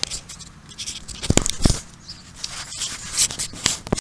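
Close scraping and rustling with two sharp knocks about a second and a half in, then more clicks near the end: handling and digging noise right at the microphone.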